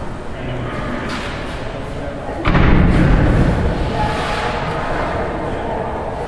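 One heavy thud about halfway through, sudden and dying away over about a second: a rhinoceros bumping its head against the steel bars and door of its enclosure.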